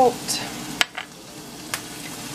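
Ground beef sizzling in a pan, with sharp knocks of spice containers being set down and picked up on a stone countertop, the loudest about a second in.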